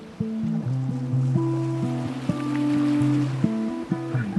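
Lo-fi hip hop music with a low bass line under slowly changing held chords.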